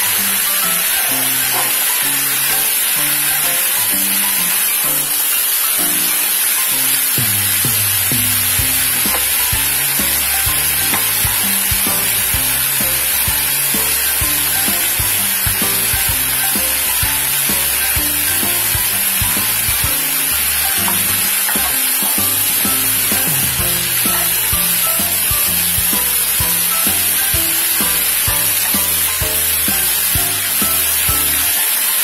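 Chicken pieces, potato and carrot sizzling as they fry in a pan, a steady high hiss.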